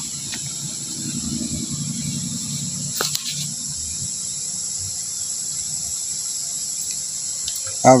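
Steady high trilling of insects in the background, with a low handling rumble over the first few seconds and a single sharp click about three seconds in as the power button of a dead Tosunra CRT TV is pressed. No sound of the set starting follows: the TV has no power.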